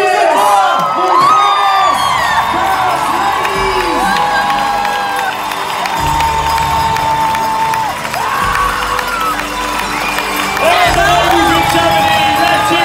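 A large crowd cheering and whooping, many voices shouting at once with some long held calls.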